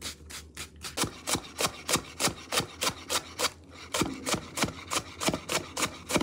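A chef's knife cutting a leek on a wooden cutting board in quick, regular strokes, about three a second. Each stroke is a crisp crunch through the leek ending on the board. The strokes are softer in the first second, then louder, with a brief pause midway.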